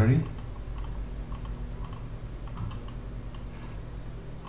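Scattered light clicks of a computer keyboard and mouse being worked, over a low steady hum.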